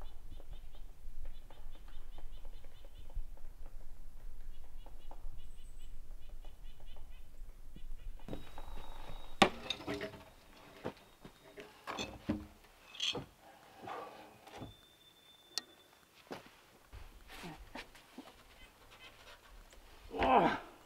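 Scattered wooden knocks and thuds from work on a log frame, the loudest about halfway through, after a bird trills repeatedly over a low steady rumble in the first part.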